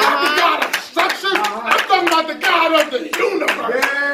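A preacher's loud, impassioned voice in quick bursts, words not clear, with hands clapping sharply throughout.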